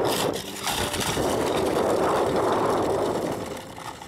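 Small plastic wheels of a toy doll stroller rolling over gravel, a steady grainy rattle. It dips briefly about half a second in and fades away near the end.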